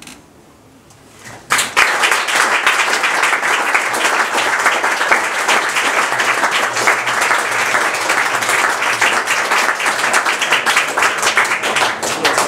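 Audience applauding, starting suddenly about a second and a half in after a short quiet, then clapping steadily.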